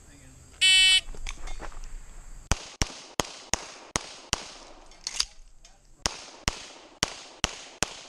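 Electronic shot-timer start beep, then a Springfield Armory XDm 5.25 pistol firing .40 S&W major-power rounds. There are two fast strings of shots about a third of a second apart, split by a pause of about a second and a half for a mandatory reload.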